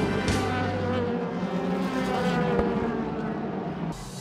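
DTM touring car V8 engines running in the pit lane, the engine note drifting slowly downward in pitch, with music briefly underneath at the start.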